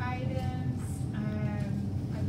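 A person's fairly high-pitched voice in short, bending phrases, over a steady low room hum.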